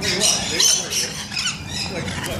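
Rainbow lorikeets calling: many high, shrill calls overlapping throughout.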